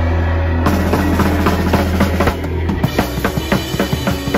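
Live crust punk band playing loud: a held low note rings on while the drum kit comes in about half a second in with a fast beat of bass drum and snare. The held note stops near three seconds, and the drums and guitar carry on.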